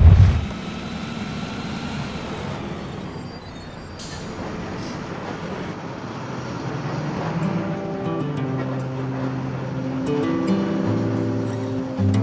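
Road traffic and bus noise, a steady rush, under background music whose held notes grow stronger about halfway through.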